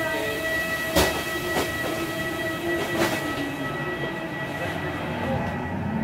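Steady machine hum with a high, constant whine from a parked airliner's machinery at the jet-bridge door. Lower tones in the hum fade about four seconds in, and there are a few sharp knocks about one and three seconds in.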